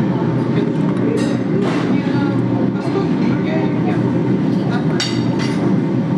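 Busy café background of many people talking at once. A fork clinks and scrapes against a ceramic bowl a few times, once or twice in the first two seconds and again about five seconds in.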